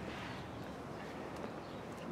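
Quiet, steady outdoor background noise with no distinct sound event.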